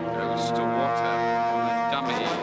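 Film score: a dark orchestral chord with low brass, held steady.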